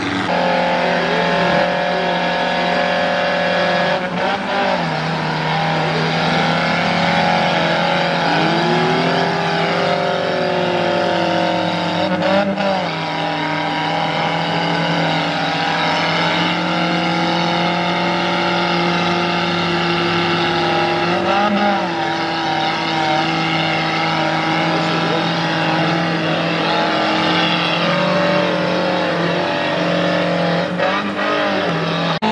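Off-road 4x4's engine revving high and held under load as it climbs a steep muddy slope. The pitch rises about eight seconds in and then holds steady, with a few short rev blips.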